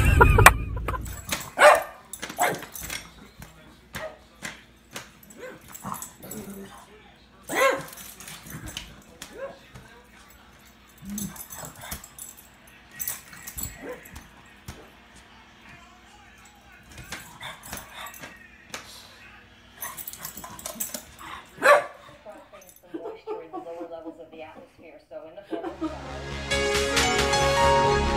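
Pug barking and yipping in short separate bursts, the loudest about 2, 8 and 22 seconds in.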